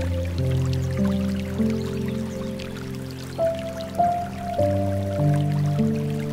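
Slow, soft piano music, single notes entering every half second or so over held low chords, with the trickle and drip of flowing water mixed underneath.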